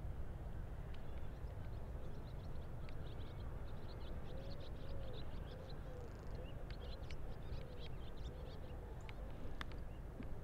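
Wind on the microphone makes a steady low rumble. From about three seconds in, small birds chirp and twitter in many short high notes.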